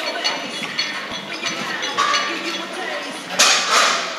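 Indistinct voices with light metallic clinks, and a short, loud burst of noise about three and a half seconds in.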